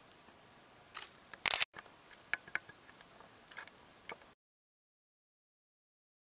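Faint hiss with a few small clicks and one short, loud scrape about a second and a half in, followed by more light ticks; the sound then cuts out to total silence a little after four seconds.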